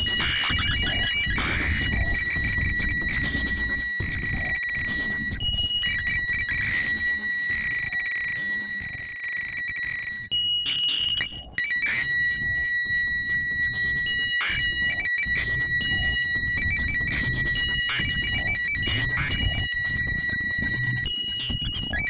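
Ciat-Lonbarde Plumbutter analog synthesizer, sampled and sequenced through a monome, playing noisy electronic music: a steady high whistling tone with a second, higher tone switching on and off, over low pulsing rumble. The sound cuts out briefly about halfway through.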